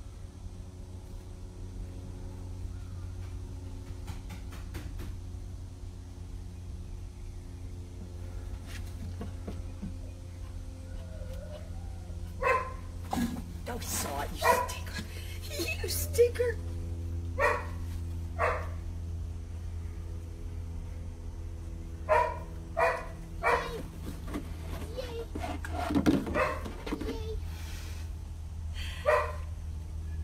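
A dog barking, single short barks starting about twelve seconds in and coming in loose clusters every second or few, over a steady low hum.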